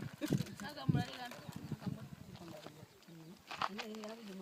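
People talking in the background in unclear, untranscribed words, with a few light clicks.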